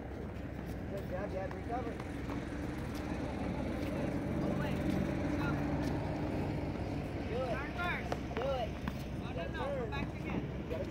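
Low motor rumble, swelling to its loudest about halfway through and then easing off, in the manner of a passing engine. Several short, high rising-and-falling calls come near the end.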